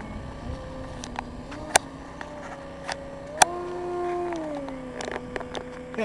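Radio-controlled aerobatic model airplane's engine and propeller running with a steady note that rises in pitch about three and a half seconds in as the throttle opens, then falls back a second or so later. Two sharp clicks, one about two seconds in and one as the pitch rises.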